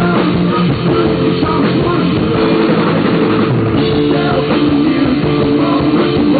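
Live rock band playing at full volume: drum kit, electric guitar and bass guitar together, loud and continuous.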